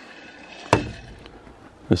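A single sharp knock, about a second in, as a stainless steel water jug is set down on a pickup truck's bed rail.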